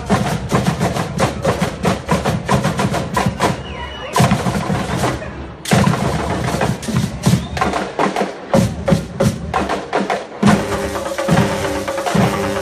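Marching band percussion section playing a fast, driving drum cadence of rapid sharp strokes, with short breaks about four and five and a half seconds in. Pitched band instruments come back in near the end.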